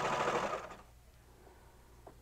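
Baby Lock Celebrate serger running at a steady fast stitch as it serges a seam in knit fabric, then stopping under a second in.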